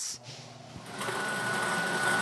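Motor-driven lottery ball drums switching on about a second in: a steady mechanical hum with a thin high whine as the balls are set mixing.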